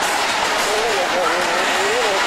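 Steady rush of wind and ride noise on a Music Express spinning amusement ride, with a wavering voice rising and falling over it.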